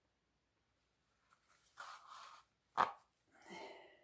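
Waxed nylon thread drawn through the stitching holes of a leather sheath during hand saddle-stitching. Three short pulls come after about two seconds of quiet, the middle one the sharpest and loudest.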